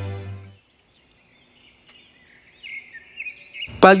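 Background music fading out in the first half-second, then faint birds chirping and twittering in the second half.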